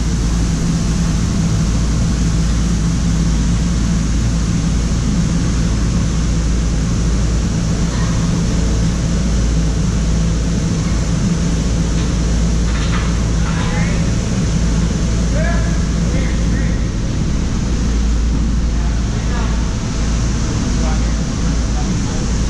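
Loud, steady low rumble and hiss with no clear events, with faint distant voices now and then in the middle.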